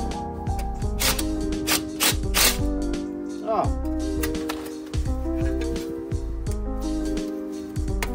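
Background music with a beat: held notes stepping in pitch over a bass line, with regular percussive hits.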